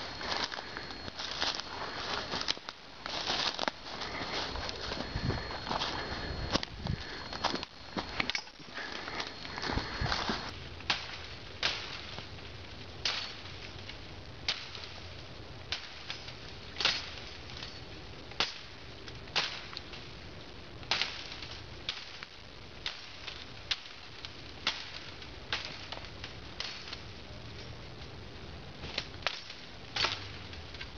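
Dry leaves and brush crunching underfoot for about the first ten seconds. Then a Gerber Gator machete chops through brush in sharp swishing strikes, about one a second.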